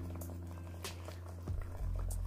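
A steady low hum with faint steady tones above it, broken by a couple of soft clicks about a second in and again near the end.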